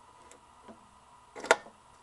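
A quarter-inch jack plug being pushed into the effects-loop send socket on the back of a Marshall AVT 275 amp. A faint click near the middle comes before one sharp click about one and a half seconds in as the plug seats.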